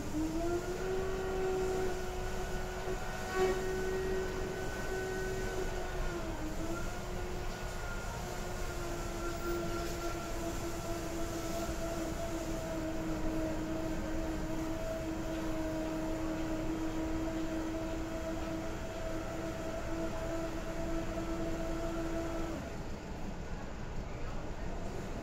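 A machine's steady whine that rises in pitch as it starts up, holds at one pitch for about twenty seconds with a small wobble, then cuts off suddenly near the end.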